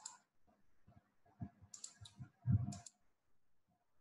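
Faint clicks of a computer mouse and keyboard: one at the start, then a short cluster about two seconds in, with a duller thump among them.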